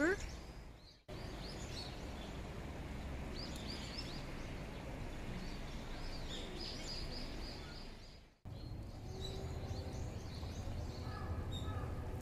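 Steady outdoor background noise with small birds chirping now and then in short, high bursts. The sound cuts out abruptly twice, about a second in and again about eight seconds in.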